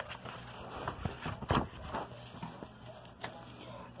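Faint handling noise of a paperback picture book: a few soft taps and clicks with light paper rustle as the pages are turned, the sharpest tap about a second and a half in.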